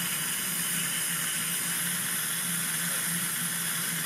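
High-speed dental handpiece with water spray running steadily as a fine diamond burr preps a zirconia implant abutment: an even, high hiss.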